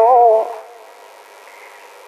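A woman singing unaccompanied in the Iu Mien traditional style, holding a long note that wavers slowly in pitch and ends about half a second in; then a pause with only faint background hiss.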